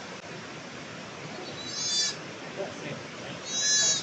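A goat bleating twice: two short, high-pitched calls about a second and a half apart, the second a little longer and near the end.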